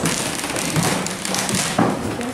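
Crackly room noise with scattered light taps, and a sharper knock near the end.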